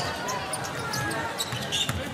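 Arena crowd murmur during live play, with a basketball being dribbled on the hardwood court and faint voices in the crowd.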